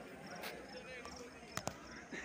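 Faint outdoor background of distant people's voices. Two sharp knocks come in quick succession near the end.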